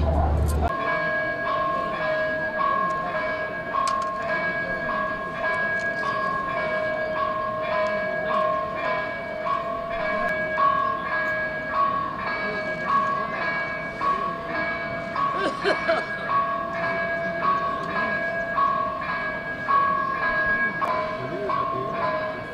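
A steady ringing made of several tones at once, one of them pulsing in a regular beat of about three pulses every two seconds.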